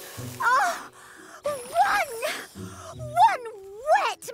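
A cartoon character's wordless vocal sounds, about three wavering moans that rise and fall in pitch, over light background music.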